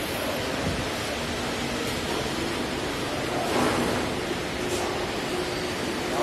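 Steady rushing background noise of a workshop. A faint steady hum comes in past the middle, from the tensile testing machine's drive slowly stretching a fabric strip during the test.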